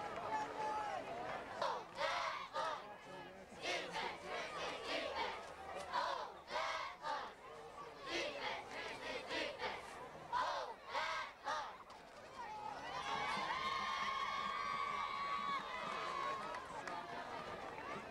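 Football crowd and players shouting and yelling in short, loud bursts, then several voices holding one long, sustained yell for a few seconds near the end as the next play runs.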